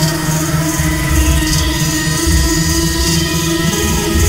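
Experimental electronic music: steady synthesizer drones over a pulsing low beat, with a short burst of high hiss recurring about every second and a half.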